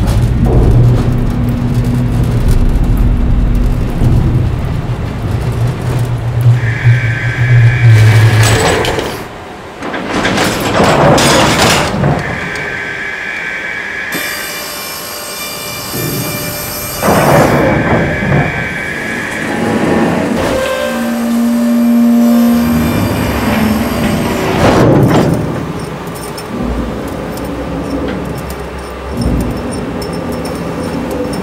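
Factory machinery running: a steady low hum, loud rushes of noise that swell and fade several times, and a high steady tone that sounds three times, each for about two seconds.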